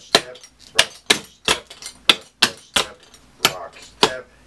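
Clogging shoes with metal taps striking a plywood board: a quick run of about ten sharp taps, some in close pairs, as the dancer works through double steps and a rock step.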